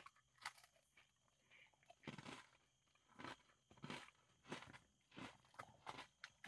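Near silence broken by faint chewing of an Oreo sandwich cookie: a few soft, short crunches spaced about a second apart.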